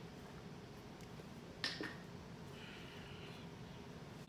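Quiet room tone with one short wet mouth sound about one and a half seconds in as a tablespoon of castor oil is sipped and swallowed, then a soft breath.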